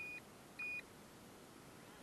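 Two short, high electronic beeps about half a second apart, the second a little louder.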